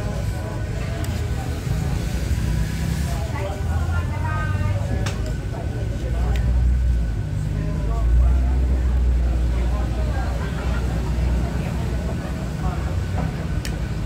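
Open-air eating-area ambience: indistinct background voices over a steady low rumble that swells twice in the middle, with a few light clinks of metal cutlery on a plate.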